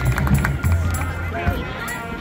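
Marching band playing on the field: drums and low brass, which drop away about a second and a half in, leaving softer held notes under the chatter of nearby spectators.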